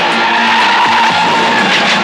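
Car tyres squealing in one long skid over film-trailer music.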